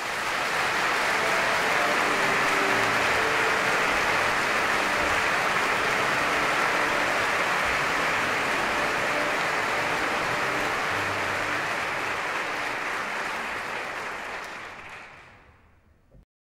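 Audience applauding, building up over the first second or two and dying away over the last two seconds.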